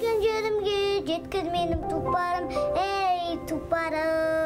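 A young girl singing solo, in a language other than English, a song of longing for her homeland and a fast horse, in long held notes that sometimes waver.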